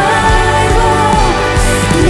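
Live worship band playing a Christian song: women singing the melody together over acoustic guitar, electric guitar, bass, keyboard and violin, with a steady beat.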